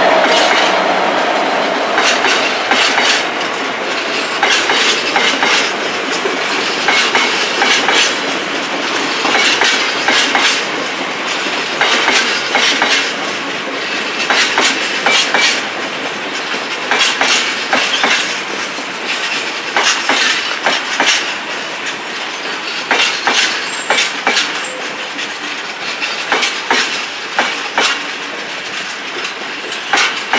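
A long rake of freight hopper wagons rolls past with a steady rumble. The wheels clack over the rail joints in repeated clusters of clicks.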